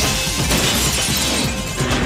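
Trailer music under a loud crash sound effect: a long noisy burst that dies away after about a second and a half.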